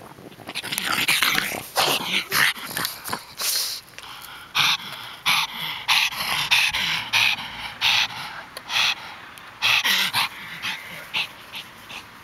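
A pug breathing hard and noisily in short bursts right at the microphone, about one or two a second, in a fit of hyper play. The bursts ease off near the end as it runs away.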